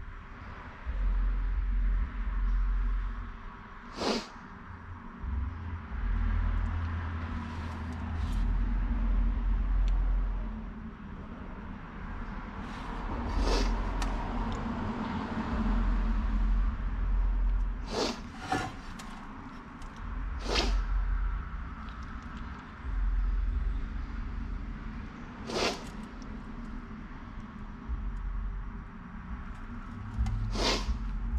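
Handling sounds at a workbench as a bead of RTV sealant is laid around the bolt holes of a steel differential cover: low rumbling in irregular bursts under a faint steady hum, with about six sharp clicks or taps, two of them close together about 18 seconds in.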